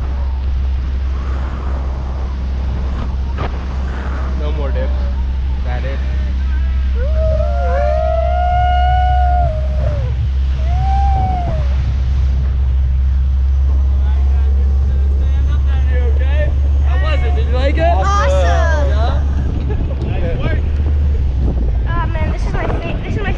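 Steady low rumble of wind buffeting the microphone high above a motorboat, with the boat's engine underneath. Indistinct voices come through briefly about a third of the way in and again near the end.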